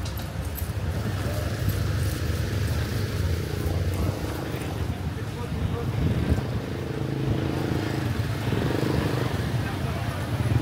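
Busy street ambience: a steady low rumble of road traffic with people's voices talking in the background.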